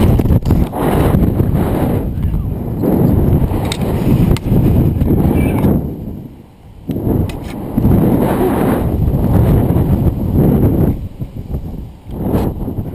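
Wind buffeting a body-mounted GoPro's microphone during a rope jump's free fall and swing: a loud rushing roar in two long surges, dipping briefly about six seconds in and again near the end.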